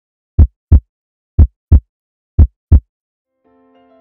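Heartbeat sound effect: three loud double beats (lub-dub), the pairs about a second apart. Soft music starts faintly near the end.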